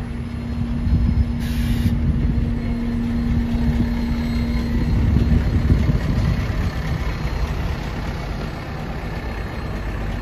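New Routemaster diesel-electric hybrid double-decker bus standing at the stop with its engine running, a steady low rumble. A steady hum stops about halfway through.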